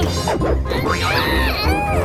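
Crunching and crashing of a school bus body being crushed by an excavator's grapple, over background music with a steady low beat. A high wavering squeal runs through the second half.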